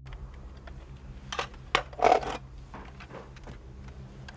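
Plastic remote-control toy car being picked up and handled: a few sharp clicks and a short clatter about halfway through, over a low steady hum.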